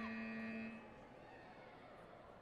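Electronic end-of-round buzzer: one steady pitched tone of under a second that cuts off sharply, signalling the end of a taekwondo round.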